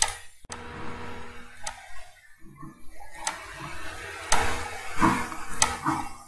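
A computer mouse clicking a few times, irregularly spaced, with one sharper click about half a second in, over a faint steady hum.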